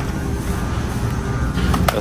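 Supermarket background noise: a steady low rumble with faint music, and two sharp clicks near the end.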